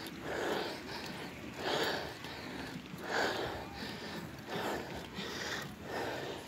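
A man breathing hard while pedalling a bicycle, a soft huff of breath about every one and a half seconds: the laboured breathing of a tired rider.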